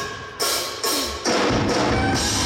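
Live drum kit with cymbals: after a brief drop, a few single accented hits land about half a second apart, then full, dense playing comes back in about a second and a quarter in.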